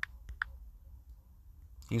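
Three quick taps on a smartphone's on-screen keyboard in the first half second, each a short, sharp click, over a faint low hum.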